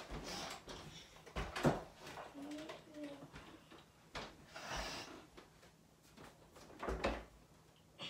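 Clunks and knocks of upright vacuum cleaners being set down and handled: a few separate thumps, the loudest about a second and a half in and again about seven seconds in.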